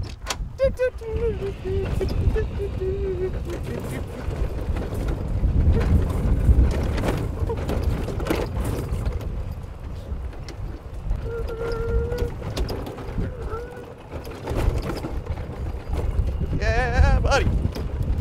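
A golf cart driving over a rough dirt track, with a continuous low rumble and scattered knocks and rattles from the bumps. A man's voice comes in near the end.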